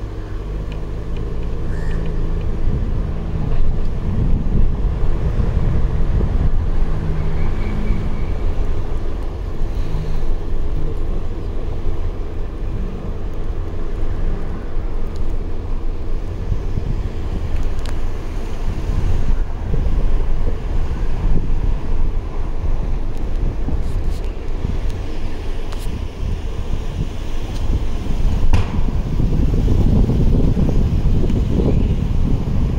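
Wind buffeting a phone's microphone, a steady low rumble that hardly changes.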